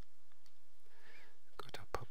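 Near-quiet room tone, then about one and a half seconds in a few computer mouse clicks, with a soft, half-whispered voice starting over them.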